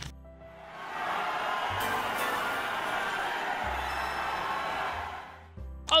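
A crowd cheering, swelling in about a second in, holding steady and fading out near the end, over quiet background music.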